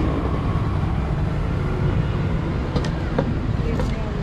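Steady low rumble of road traffic, with two faint clicks near the end.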